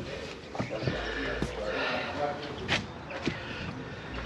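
Footsteps and scattered sharp knocks on a flat roof, with faint talk in the background.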